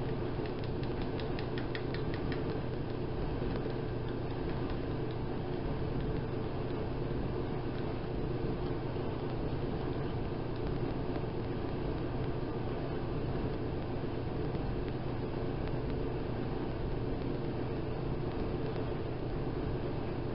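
Steady machine hum with a constant low drone. A few faint ticks come in the first couple of seconds.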